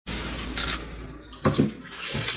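Wet eating sounds as a piece of braised chicken is handled and bitten into, with two short sharp sounds about one and a half seconds in, over a steady background hiss.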